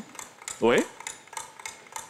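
One short spoken 'oui' about half a second in, with faint, scattered light clicks and ticks between the words.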